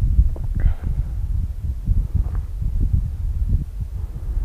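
Wind buffeting the camera microphone: an uneven, gusty low rumble.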